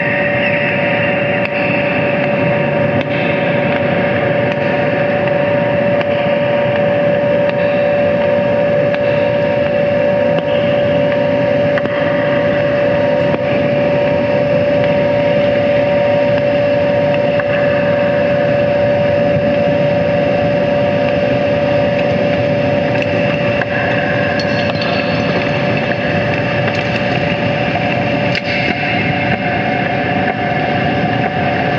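Loud, continuous electronic noise drone from a synthesizer and effects gear: a steady held tone running through a thick, unchanging wash of noise. A second, higher held tone comes in near the end.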